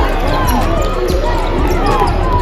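A basketball being dribbled on a hardwood arena court during a live game, with crowd voices in the hall around it.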